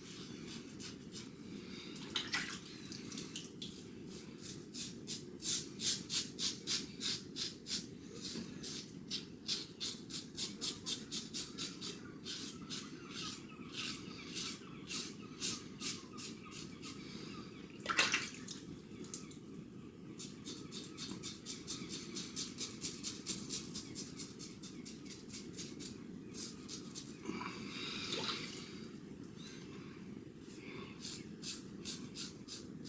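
Above The Tie double-edge safety razor scraping through stubble under lather in short, quick strokes, about three a second, in two long runs. A single sharp click comes about eighteen seconds in.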